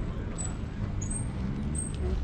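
Low, steady outdoor rumble with faint voices in the background.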